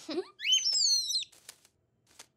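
A cartoon bird's chirping call: a quick rising whistle, then a few short tweets that step down in pitch, lasting about a second.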